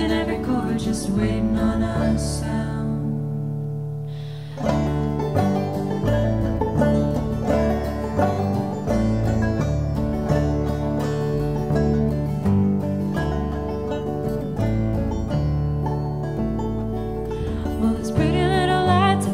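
Live acoustic string band of banjo, upright bass and acoustic guitar playing an instrumental passage. A held chord fades out over the first few seconds. About four and a half seconds in, the plucked banjo and guitar come back in over the bass with a steady beat.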